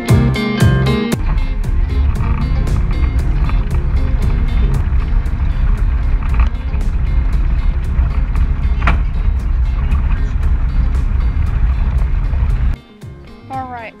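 Onboard sound of a Polaris RZR XP 1000 side-by-side driving over a rocky dirt trail: a steady low rumble of its parallel-twin engine, tyres and jolting. It cuts off sharply about a second before the end.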